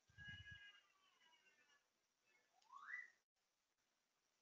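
Near silence: faint room tone, with faint pitched sounds in the first second or two and a brief rising whistle-like tone just before three seconds in.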